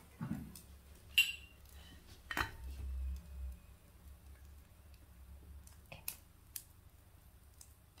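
A handful of sharp clicks and knocks from an oil bottle being handled and opened over a nonstick frying pan, the loudest about a second in, with a brief low rumble about three seconds in.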